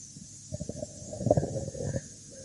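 A person's voice making a low, creaky sound without words. It starts about half a second in and lasts about a second and a half.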